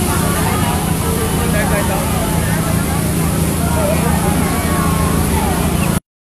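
A crowd's voices calling out over a steady low engine hum from a vehicle running idle close to the microphone.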